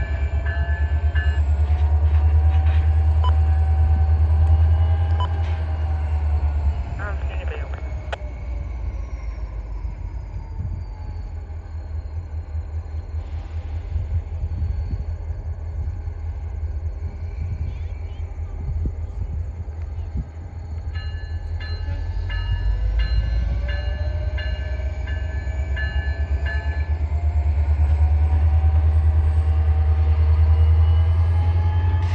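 Pair of EMD SD40N locomotives, each with a 16-cylinder 645 diesel, running under load while shoving a cut of freight cars. There is a deep engine rumble, loudest near the start and again near the end, and a high whine that slides down and back up. A fast, repeated high-pitched ringing sounds near the start and again about three-quarters through.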